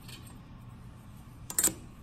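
A steel ruler laid down on graph paper, making one brief metallic clatter about a second and a half in.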